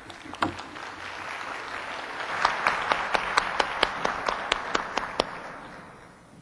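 Audience applauding at the end of a talk. The clapping swells over the first couple of seconds, with a run of sharp separate claps standing out in the middle, and dies away near the end.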